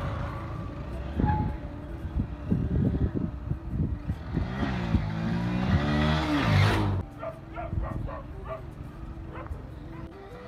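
Motorcycle engine running as the bike rides toward the camera, revving up with rising pitch and growing louder in the middle of the stretch. It cuts off suddenly about seven seconds in, and fainter mixed sounds follow.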